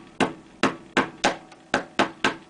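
Hammer tapping a large-headed stainless steel nail into the sofa's seat frame, setting it in: about five quick, light blows in a steady rhythm of roughly two and a half a second.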